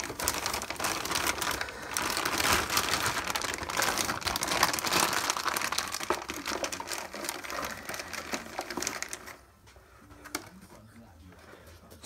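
Thin plastic bag crinkling and rustling as it is crumpled and pushed into a cardboard box, lasting about nine seconds, then a quieter stretch with a few light clicks.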